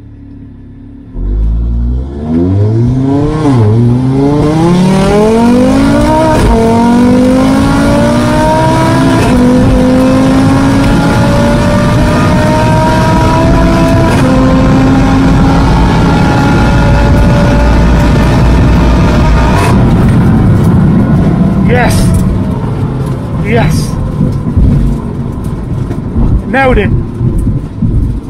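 Audi RS3's big-turbo, forged 2.5-litre five-cylinder engine at full throttle from the start line, heard from inside the cabin. Its pitch climbs through the gears with several quick dual-clutch upshifts, and each gear is held longer than the last. About twenty seconds in, the throttle closes and the engine drops to a lower rumble as the car slows, with a few short bursts near the end.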